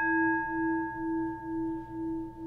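A struck singing bowl keeps ringing with a steady tone and several higher overtones. Its level pulses about twice a second as it slowly fades.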